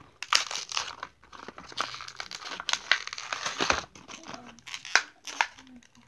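Plastic toy packaging crinkling and tearing as it is pulled open by hand, in bursts of crackling with sharp snaps.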